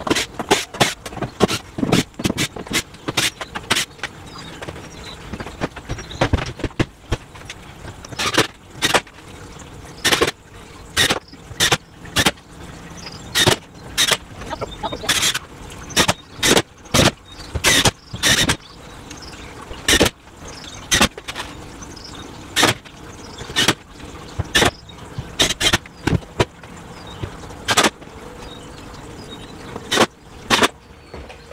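Irregular series of short, sharp knocks and clicks from fitting a teardrop camper's door and driving its screws. The knocks come in quick clusters with brief pauses between.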